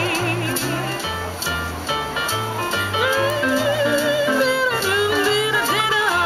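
A woman singing into a handheld microphone with a wide vibrato, over an accompaniment whose bass line steps from note to note. She holds one long note from about three seconds in to nearly five seconds, glides down, and rises again near the end.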